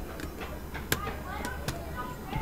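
Two light metallic clicks, about a second in and near the end, as a lock's tubular latch assembly is handled and fitted against the lever lock's body.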